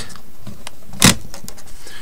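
Pen writing on paper: faint scratching, with one short, sharp stroke about a second in.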